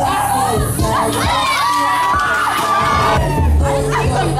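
A group of young people cheering and shouting excitedly, several voices at once and some high-pitched, over quieter hip hop music.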